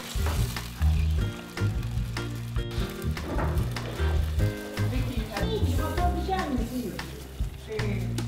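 Chopped tomatoes and onion sizzling in olive oil in a steel pot, stirred with a wooden spoon, over background music.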